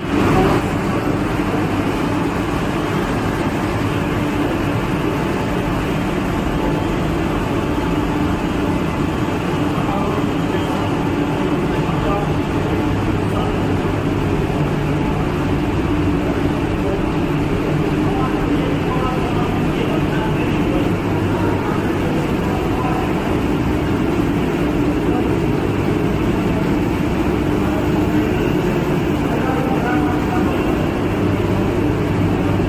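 Steady, loud drone of machinery running in an underground hydroelectric powerhouse: an even rush with a constant low hum.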